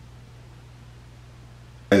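Quiet room tone with a faint steady low hum, then a man's voice starts speaking right at the end.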